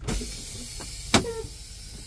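Steady hiss of compressed air escaping from a truck's air brake system, a leak on the tractor brake circuit that stops when the tractor parking brakes are applied. A single sharp click about a second in.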